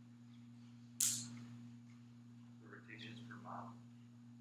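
A student's faint, distant voice answering across the classroom, over a steady low electrical hum, with a brief sharp hiss about a second in.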